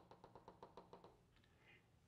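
Chalk chattering on a blackboard as a circle is drawn: a quick run of faint ticks, about six a second, that stops about a second in.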